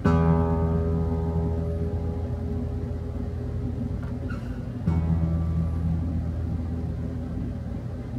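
Seagull S6 steel-string acoustic guitar: a low string is plucked once and rings out, fading slowly, then is plucked again about five seconds in. The string is being tuned against a clip-on tuner with a newly fitted Gotoh tuning machine.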